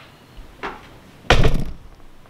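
Vintage Burwood heavy plastic wall plaque being set down: a light tap, then a loud thunk about one and a half seconds in as it lands.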